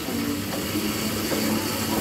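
Hand-cranked arm ergometers whirring steadily as they are cranked hard, a continuous mechanical running sound of the flywheel and crank gearing.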